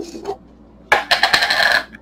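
Plastic canister and its lid being handled: a scraping, squeaky rub of plastic on plastic lasting about a second in the middle.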